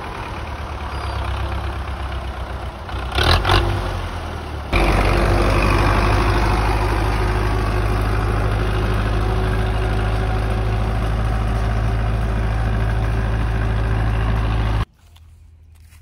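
Belarus tractor's diesel engine running steadily while pulling a seed drill. Before it there is a quieter stretch of engine sound broken by a short loud noise about three seconds in. The engine sound stops suddenly near the end.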